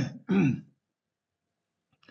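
A man clearing his throat twice in quick succession, each sound falling in pitch, within the first second.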